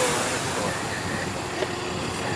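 Tour bus engine running close by, a steady noise with a hiss in it.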